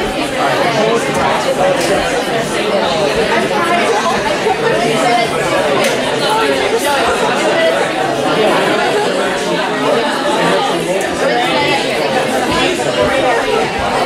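Many students talking at once: a steady babble of overlapping voices, with no single voice standing out.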